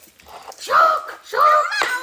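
A child speaking loudly, in two drawn-out stretches of words.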